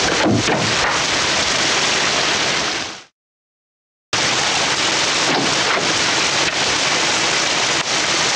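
Loud, steady rushing noise from an old film soundtrack, with a few faint knocks in it. It cuts off abruptly a little after three seconds in, leaving a second of dead silence, then starts again.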